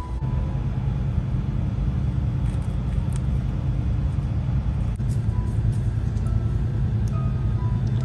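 Steady low rumble with a few faint clicks.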